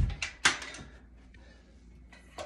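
Handling noise: a low thump at the start, then two sharp clicks or rustles within the first half second, then quiet room tone.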